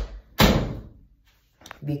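A sharp, loud thud about half a second in that dies away quickly, with rustling handling noise around it and a few faint clicks later, as a phone is moved about and grabbed.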